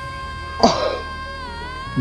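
A woman's singing voice holds one long high note with a slight waver over a steady low drone. About half a second in, a man's short cough-like outburst cuts across it.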